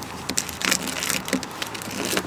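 Irregular crinkling and crackling of a foil Orbz balloon and a latex 260 twisting balloon rubbing together as the latex balloon is tied in a knot.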